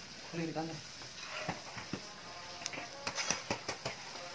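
Scissors snipping hair: a string of sharp, separate snips that come quicker near the end, with a brief voice about half a second in.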